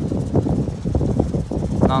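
Strong wind buffeting the microphone in uneven gusts, a heavy low rumble.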